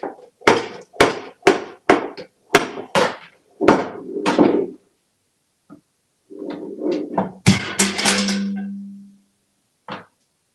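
A small tin pail being shoved about by an African grey parrot: a run of sharp knocks and thunks, then, about seven and a half seconds in, a loud clang as the pail is knocked off the counter, leaving a low ring that fades away.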